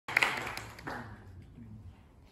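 Audience applause dying away: a few sharp claps at the start, then a fading patter.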